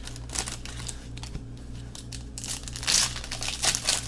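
Foil football-card pack crinkling as it is worked open by hand, in irregular crackles with a louder burst about three seconds in, over a steady low electrical hum.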